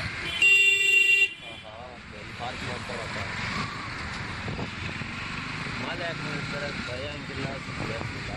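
A vehicle horn gives one loud, close blast of just under a second, then stops; steady road and wind noise from the moving motorcycle carries on underneath.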